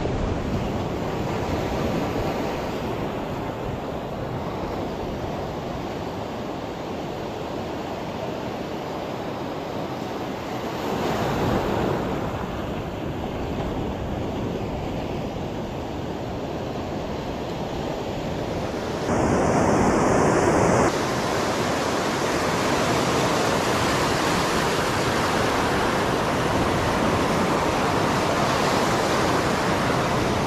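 Ocean surf breaking and washing up on a beach, a steady rushing noise with wind on the microphone. The surf swells louder twice, around the middle and again about two-thirds of the way through.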